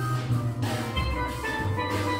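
A steel band playing: many steel pans striking quick melody and chord notes over low, sustained bass-pan notes.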